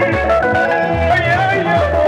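Live band music: a bass line pulsing about twice a second under a wavering melody line in the middle range.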